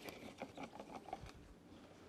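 Faint scraping and light ticking of a wooden mixing stick against a plastic mixing cup as thick two-part epoxy is stirred, mostly in the first second or so.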